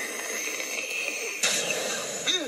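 Hissing smoke-puff sound effect for a magical transformation, a steady hiss like escaping steam that surges again about one and a half seconds in.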